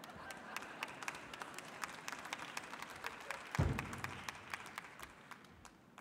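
Large audience applauding, a dense patter of hand claps that fades toward the end. About halfway through comes one heavy thud, a wooden bench being set down on the stage floor.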